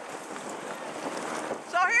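Dog sled gliding over packed snow: a steady hiss from the runners, mixed with wind on the microphone.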